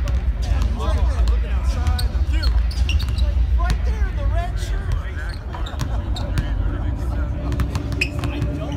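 Basketballs bouncing on a hardwood court, with repeated sharp bounces at irregular intervals over a steady low rumble.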